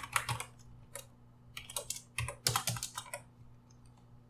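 Typing on a computer keyboard: several quick runs of keystrokes with short pauses between them, stopping about three seconds in.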